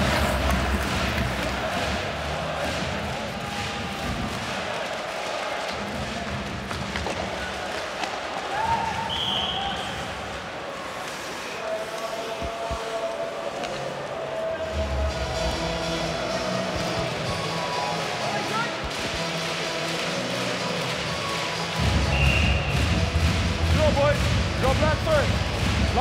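Ice hockey play on the rink: sticks and puck clacking and skates scraping on the ice over crowd noise. A short, high referee's whistle sounds about 9 seconds in and again around 22 seconds.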